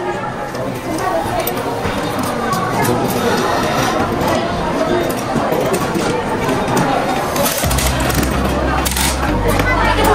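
Voices chattering in a busy indoor space, no single clear speaker, with background music whose low bass comes in near the end.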